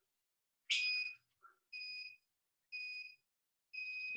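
Workout interval timer beeping a countdown: four short, high beeps about a second apart, the first the loudest, counting down to the start of the next interval.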